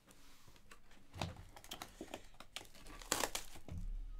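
Plastic shrink wrap crinkling and tearing as it is pulled off a sealed box of trading cards, in irregular crackles, loudest about a second in and again around three seconds.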